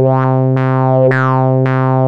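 Kilohearts Phase Plant software synthesizer holding a steady sawtooth note, its filter cutoff swept by a tempo-synced LFO about twice a second. Shortly after the start the sweeps change from rising-and-falling to jumping up and falling away, as the LFO shape changes from pyramid to ramp down.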